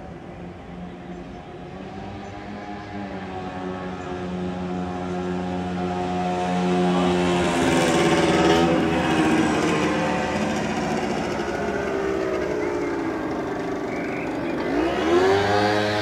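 An engine passing close by. Its hum builds over about eight seconds and peaks with a falling pitch, then a second engine sound rises sharply in pitch and level near the end.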